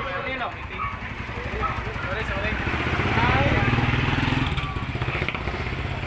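A motorcycle engine running close by, growing louder about halfway through and easing off near the end, under people talking.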